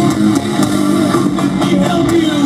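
Heavy metal band playing live: distorted electric guitars over drums, loud and steady.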